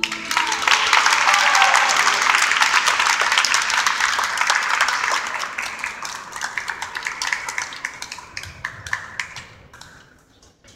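Audience applause, full at first and thinning out to a few scattered single claps near the end.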